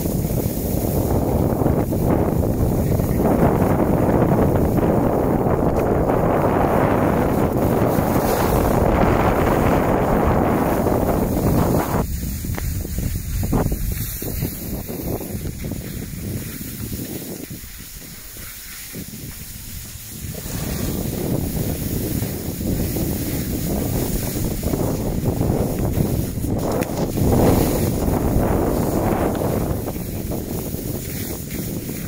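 Wind rushing over the phone's microphone, mixed with skis sliding over packed snow, as the skiers move down the slope. The noise eases off for several seconds in the middle and then picks up again.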